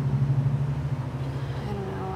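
Steady low rumble of a vehicle engine in the street, with no change in pitch.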